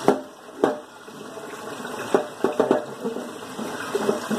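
Dishes and cutlery being hand-washed: a handful of sharp clinks and knocks of dishware against each other, the loudest right at the start and a quick cluster about two and a half seconds in.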